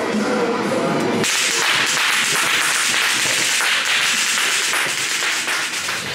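Loud, steady hiss of rushing air that cuts in abruptly about a second in, replacing eerie pitched tones from the haunted maze's soundtrack.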